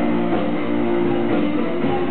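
Live rock band playing, led by strummed guitar with drums.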